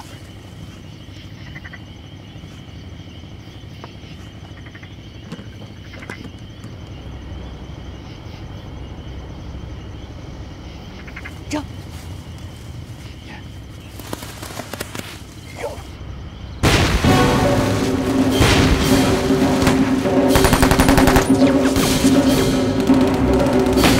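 Low background with a few scattered faint clicks, then, about three-quarters of the way in, a sudden loud, rapid volley of cracks like machine-gun fire that runs on to the end. Dramatic film music with held low notes sounds under the volley.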